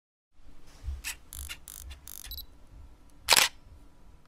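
Camera sound effects: a run of short mechanical clicks and whirs, then one loud, sharp shutter-like click a little after three seconds in.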